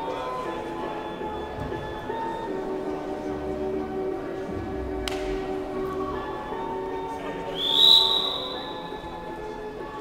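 Music playing over the hall, and about three-quarters of the way through a referee's whistle blows once, rising quickly to a held shrill note, signalling the start of the wrestling bout.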